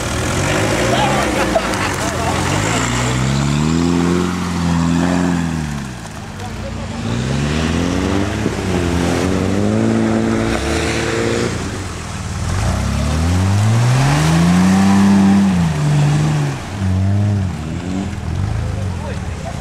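Engine of a modified Mercedes-Benz off-road 4x4 revving hard in three long surges, its pitch climbing and then dropping over a few seconds each time, as the truck is driven through deep mud.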